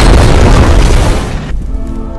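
Loud, dense rumble of battle explosions under a music soundtrack, fading out about a second and a half in to a held chord that dies away.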